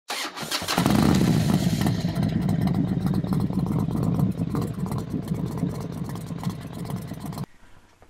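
Motorcycle engine being cranked and catching about a second in, then running steadily before cutting off abruptly near the end.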